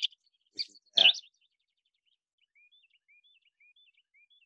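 Recorded wren song played back: a couple of louder notes in the first second, then faint short chirping notes repeating about twice a second.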